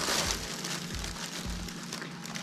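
Thin plastic carrier bag crinkling and rustling as a tight knot in its handles is pulled at to get it open.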